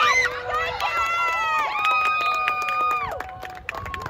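Football spectators yelling in long, high-pitched held shouts during a play, one shout after another over general crowd noise, dying away near the end.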